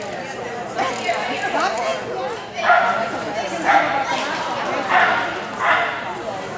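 A dog barking four times, roughly a second apart, over background voices.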